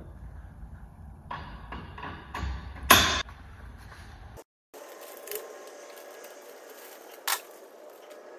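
Metal parts of a clay-target thrower being handled during assembly: a few light clicks and knocks, with a sharp metallic clink about three seconds in and another near the end.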